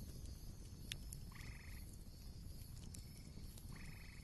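Faint background of frog calls: two short pulsed trills, about a second and a half in and near the end, over a low steady rumble.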